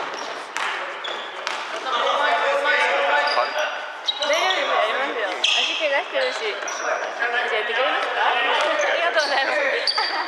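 Basketball game on a wooden gym floor: the ball bouncing in sharp thuds, short high sneaker squeaks, and players calling out to each other, busiest from about two seconds in.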